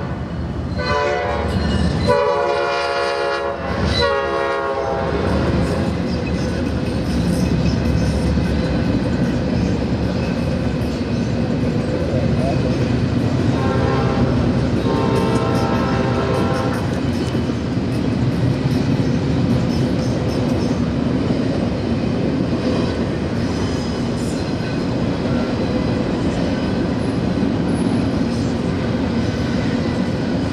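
A GE ES40DC locomotive's air horn, an old cast Nathan P5, sounds several blasts in the first five seconds, then two fainter blasts about fourteen seconds in. Under and after the horn, a double-stack container train rolls past with a steady rumble and wheel clatter.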